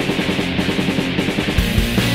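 Rock song with electric guitar starts abruptly. Regular low beats join about one and a half seconds in.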